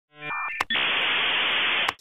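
Electronic glitch sound effect: a brief buzz, a click, then about a second of steady static hiss that ends abruptly with another click.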